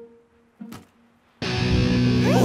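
A distorted electric guitar chord is struck loudly about one and a half seconds in and left ringing.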